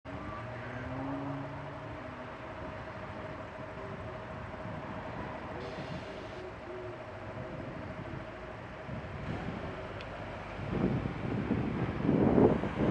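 Steady traffic noise of vehicles idling in a queue at a junction, with a faint steady hum. Near the end it gets louder and rougher, with wind rumbling on the microphone as the camera moves off.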